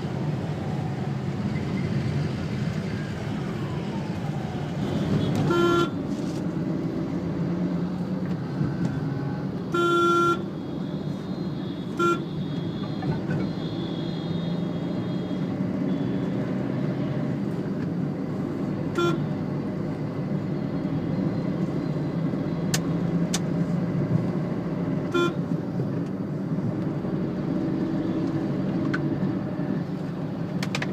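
Road traffic heard from inside a moving taxi: steady engine and road noise, broken by short car horn toots about five times, the longest about ten seconds in.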